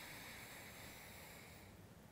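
A very faint, slow inhale through one nostril during alternate nostril breathing, fading out near the end.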